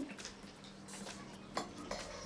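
A few faint, sparse clicks and taps of gummy candies being handled on a plastic candy tray and plates, with quiet room tone between them.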